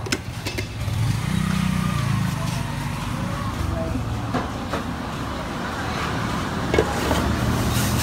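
A steady low engine hum that rises briefly about a second in, with a few light clicks over it.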